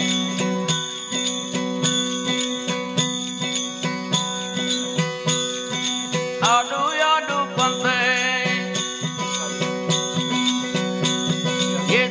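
Live Gujarati devotional bhajan: a steady tanpura drone under a regular beat of jingling percussion. About six and a half seconds in, a wavering high melody line with vibrato comes in over it.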